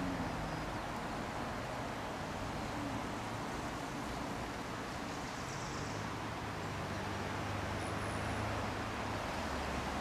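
Steady background rumble of distant road traffic, even throughout with no distinct events.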